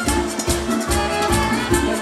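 Live dance orchestra with drums, bass and a horn section playing an upbeat Latin-style song with a steady beat.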